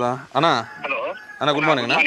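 A man's voice speaking in short, broken phrases; the words are unclear.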